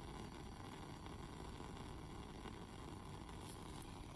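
Faint, steady low rumble and hiss of a lit Bunsen burner flame, with no sudden sounds.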